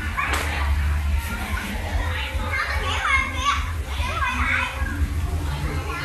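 Children's high-pitched voices calling out and chattering as they play, loudest around the middle, over a steady low hum.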